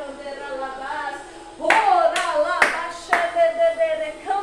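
A woman's voice chanting in a drawn-out, sung tone, praying in tongues. About halfway through come four sharp hand claps, roughly two a second, louder than the voice.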